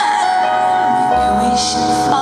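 Live pop ballad: a female singer holds one long note over electric keyboard chords, and a deep bass note comes in about a second in.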